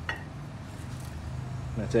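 A steady low machine hum that grows a little firmer partway through, with a short click at the start.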